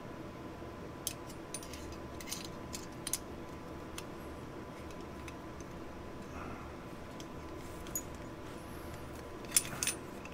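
Light metallic clicks and clinks of M1A (M14) trigger group parts (hammer, trigger housing and trigger guard) being handled and fitted together by hand. The clicks come scattered and irregular, with the sharpest ones near the end.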